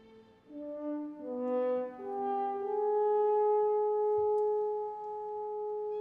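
French horn playing a few short notes, then a long held note from about two seconds in.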